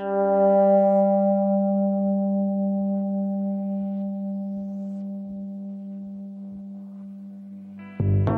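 One sustained electric guitar note, sounded at the start and left to ring, fading slowly over several seconds as its upper overtones die away first. A faint, soft low pulse repeats steadily underneath.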